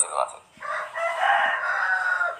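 A rooster crowing in the background: one long crow beginning about half a second in and lasting roughly a second and a half, about as loud as the voice.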